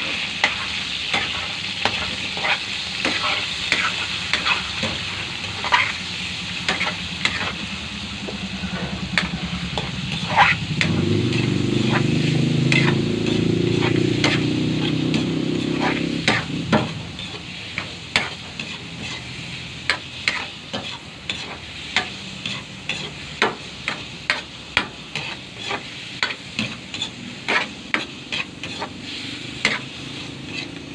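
Pork cubes frying in oil in an aluminium wok, sizzling, with a spatula scraping and knocking against the pan as it is stirred. A low hum joins in for about six seconds near the middle, and in the second half the sizzle is quieter and the spatula's knocks stand out.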